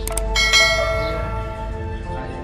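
Subscribe-button sound effect: two quick mouse clicks, then a bell struck once and ringing out, fading over about a second and a half, over background music.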